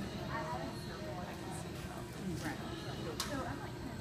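Indistinct voices of people talking in the background, with no clear words, and a single sharp click about three seconds in.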